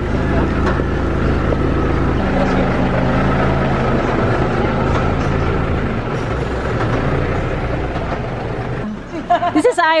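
Diesel engine of an Isuzu Forward dump truck running steadily close by, its note dropping slightly about six seconds in. A voice is heard near the end.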